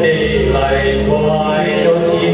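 A man singing a ballad into a microphone over backing music, holding long notes.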